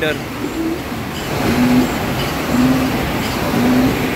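Automatic lead edge feeder die-cutting machine running on a 5-ply corrugated board job, a steady mechanical din with a short low tone that repeats about once a second, in step with the machine's cycle of about 3900 sheets an hour.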